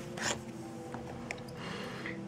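A short scrape of a clear plastic blister package as it is picked up off a table, followed by faint handling sounds.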